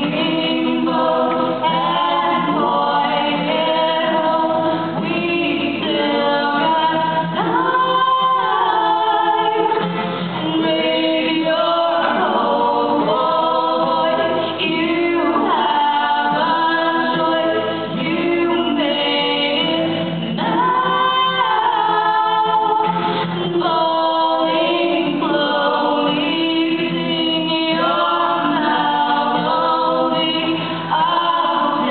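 A live song: a woman and a man singing together over a strummed acoustic guitar, the singing continuous throughout.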